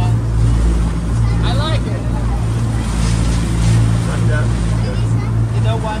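Amphibious duck-tour vehicle's engine running steadily while afloat, a low drone under the splash and churn of its wake.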